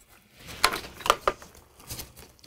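Plastic IV tubing being handled at an infusion pump with gloved hands: a few light clicks and rustles, irregularly spaced.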